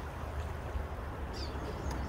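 Steady rush of river water flowing high past a bridge pier, the river rising toward its summer flows, with a steady low rumble underneath.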